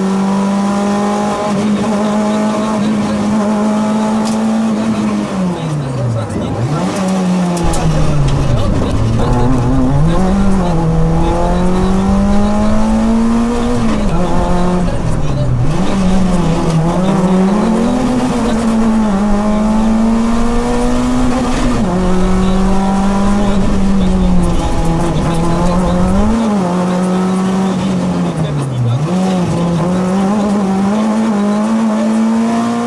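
Citroën Saxo rally car's engine heard from the cockpit, held high in the revs, its pitch dropping sharply and climbing back several times as it lifts off and pulls again through the bends. A deep rumble joins in from several seconds in and stops a few seconds before the end.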